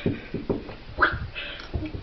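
A hamster's claws tapping and skittering on the hard floor of an empty bathtub, a few irregular taps.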